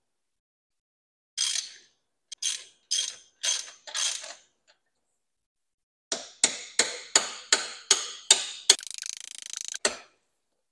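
Socket ratchet clicking in short back-and-forth strokes while loosening an engine-mount nut: five slower strokes, a pause, then about three strokes a second, ending in a second of rapid continuous ratcheting as the nut frees up.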